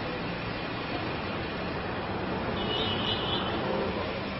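Steady road-vehicle noise: an even rumble and hiss, with a faint high tone briefly near the end.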